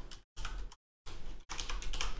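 Computer keyboard keys clicking as a password is typed, in short runs broken by brief silent gaps.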